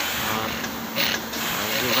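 Overlock sewing machine driven by a SUPU servo motor, running with its direction set wrong so that it turns backwards.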